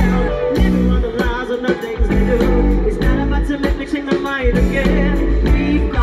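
Amplified live music: a woman singing lead into a microphone over a drum beat and heavy bass.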